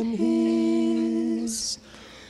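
Sung vocal duet holding one long steady note, which ends about one and a half seconds in with a short hiss, followed by a brief lull.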